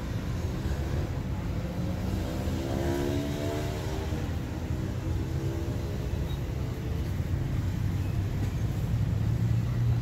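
Steady low rumble of a running engine, with a pitched hum that climbs a couple of seconds in, holds, and fades out about seven seconds in.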